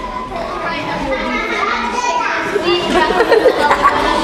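Many children's voices at once, chattering and calling out together and growing louder.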